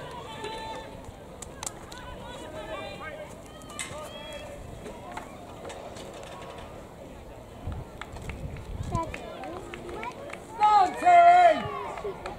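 Scattered spectators' voices at a distance at an outdoor running track, then a loud shout near the end as someone cheers on a runner.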